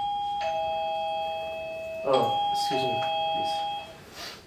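Electronic two-tone doorbell chime rung twice, a high note then a lower note each time, the second ring about two seconds in.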